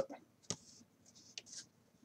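Faint handling of trading cards, card sliding against card: a sharp tick about half a second in, short dry rustles, and another tick near the middle.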